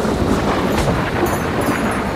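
Steady rain falling with a low rumble of thunder.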